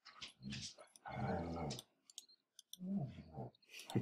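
Several sharp computer mouse clicks, with two short low vocal sounds, one about a second in and another near three seconds.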